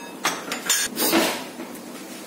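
A handful of quick knocks and clinks of kitchen utensils against pans.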